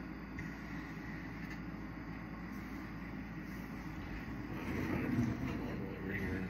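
Oxygen and fuel-gas glassworking bench torch burning with a steady rushing flame, with a louder low rumble for a moment about five seconds in.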